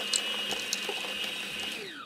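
Electric stand mixer running with its flat beater through thick red velvet cookie dough, a steady motor whine with a few light ticks, briefly working in white chocolate pieces. The motor winds down near the end as it is switched off.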